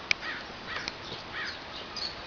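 A bird calling, three or four short calls about half a second apart, over the open-air background of the enclosure. A single sharp click comes just at the start.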